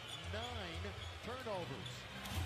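Faint NBA game broadcast audio: a commentator's voice over arena crowd noise, with the crowd booing and a basketball being dribbled.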